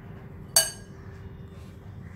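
A metal spoon clinks once against a glass mixing bowl about half a second in, a short ringing chink as filling is scooped out. A faint, steady low hum runs underneath.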